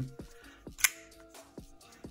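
Quiet background music with a single sharp click about a second in, from a Bestech Sledgehammer folding knife being handled.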